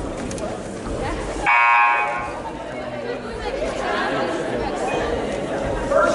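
Basketball scoreboard buzzer sounding once, for under a second, about a second and a half in, over steady crowd chatter.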